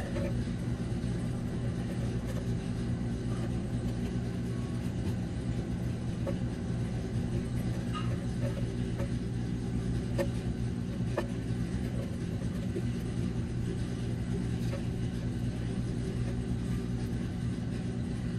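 A steady low mechanical hum, with a few faint clicks.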